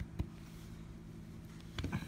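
Quiet handling sounds of a scratch-off ticket being touched: one sharp click shortly after the start and a short cluster of knocks near the end, over a steady low hum.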